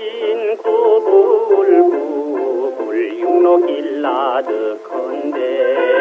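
Old Korean popular song (trot) from a 1962 record: a male voice singing with vibrato over a small band. The sound is thin, with no bass and no treble.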